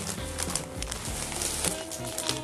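Plastic diaper packaging crinkling and rustling as a disposable pants diaper is pulled out of the opened pack, over background music.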